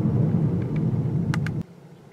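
In-cabin road and drivetrain rumble of a 2017 Kia Niro Hybrid on the move, slowly fading, with a couple of faint ticks, then cutting off suddenly about one and a half seconds in.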